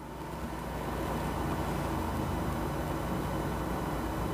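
Steady background hiss with a low hum, swelling over the first second and then holding even.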